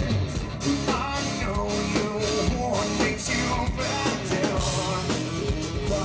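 A rock band playing live: distorted electric guitar and a drum kit with steady regular hits, under a male lead vocal.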